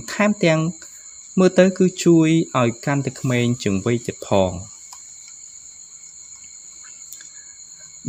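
A narrating voice speaks for the first four and a half seconds or so, then stops. Beneath it a steady, high-pitched, cricket-like whine of several fixed tones runs on without a break.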